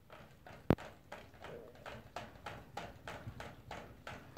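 Toy poodle drinking from a crate-mounted water bottle's metal nozzle, licking it in a steady rhythm of about four to five licks a second. One sharp click stands out about three-quarters of a second in.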